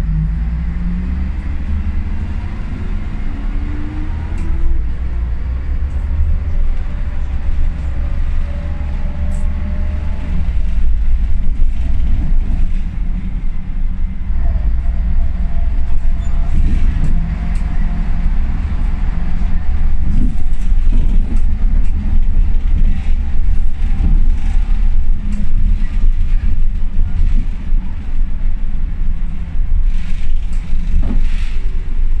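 Ikarus 280 articulated bus heard from inside while under way: a heavy diesel rumble with its ZF automatic gearbox howling in slowly rising whines, and the axle whine the model is known for. From about ten seconds in it runs louder, with frequent rattles and knocks from the body.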